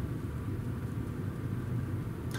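A car's engine idling, a steady low hum heard from inside the cabin with the side window open.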